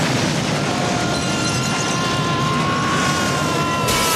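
Loud, steady rushing rumble of a film explosion, filling the whole range from deep to high, with several held high tones coming in over it about a second in.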